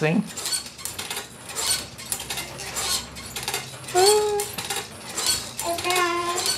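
Fisher-Price Jumperoo baby bouncer clattering and clicking as an infant bounces in it: repeated knocks and rattles from its plastic frame and the toys on its tray. A short pitched sound comes about four seconds in.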